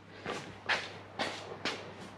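Footsteps on a concrete floor, about two steps a second.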